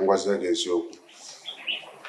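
A man speaking for the first second, then a few short bird chirps in the background.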